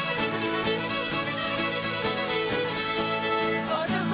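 Several fiddles playing a lively tune together over a strummed acoustic guitar, with a steady beat. Near the end the fiddle line breaks off as voices come in.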